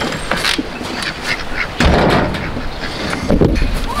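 Domestic ducks quacking several times, with a low rumble on the microphone about halfway through and again near the end.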